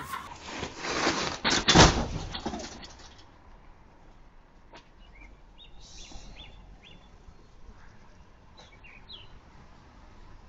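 Loud bursts of noisy rustling and knocks in the first three seconds, the loudest a thump about two seconds in. Then a quiet outdoor background with a few short, high bird chirps.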